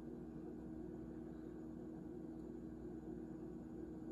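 Quiet, steady low hum over faint room tone, with no distinct events.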